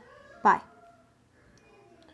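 Speech only: a single high-pitched child's voice saying "bye" once, then faint room hiss.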